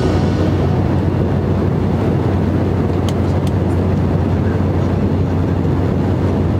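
Steady drone of an airliner cabin in flight: engine and airflow noise with a low hum underneath, and a couple of faint ticks around the middle.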